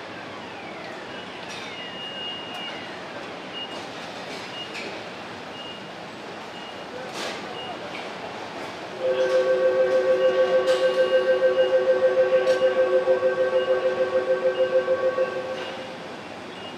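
Car assembly-plant ambience: a steady machinery din with scattered clanks and a short high beep repeating. About nine seconds in, a loud warning buzzer starts, pulsing about six times a second on two low tones, and stops about half a second before the end.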